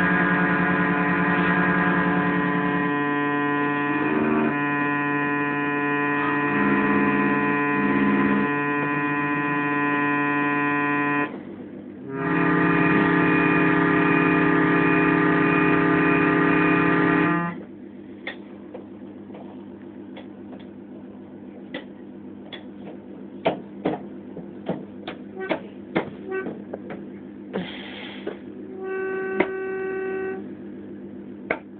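Toy organ sounding held clusters of notes as keys are pressed down together: a droning chord that shifts now and then, breaks off briefly about eleven seconds in, then a louder cluster that stops abruptly about six seconds later. After that it goes quieter, with scattered clicks and a short chord near the end.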